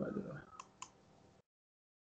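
Two faint computer mouse clicks about a quarter of a second apart.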